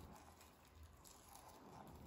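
Faint trickle of hot water poured in a thin stream from a gooseneck kettle into a glass French press of steeping barley tea.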